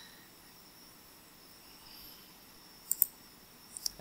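Two quick clicks of a computer mouse about three seconds in, then a fainter single click near the end, over faint room hiss.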